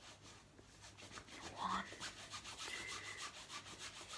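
Faint, quick rubbing and scratching of hands twisting fishing line into a knot close to the microphone.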